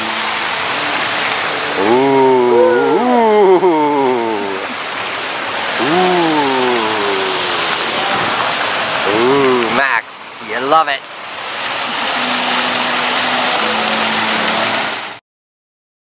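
Large fountain's water jets splashing into the pool, a steady rushing spray, with short spells of voices over it. The water sound dips briefly about ten seconds in and cuts off suddenly near the end.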